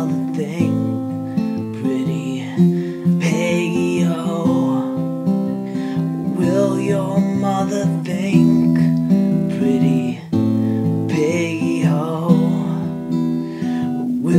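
Steel-string acoustic guitar strummed, with a man singing a folk ballad over it in drawn-out phrases.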